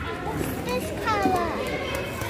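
Children playing and chattering, with a high-pitched child's voice calling out in a short gliding cry about a second in.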